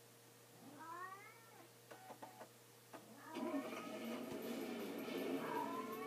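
A cat meowing: one gliding call about a second in, a few short clicks, then from about halfway a denser layer of sound with another meow near the end.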